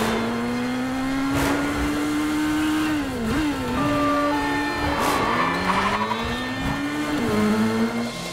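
Motorcycle engine revving hard under acceleration, its pitch climbing, dropping at a gear change about three seconds in, then climbing again. Cars rush past close by.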